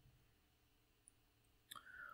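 Near silence: room tone, with a single faint click about a second in.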